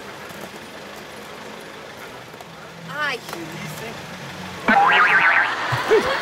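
A springy comedic 'boing' sound effect with a rapidly wobbling pitch, loud and lasting about a second, starting near the end.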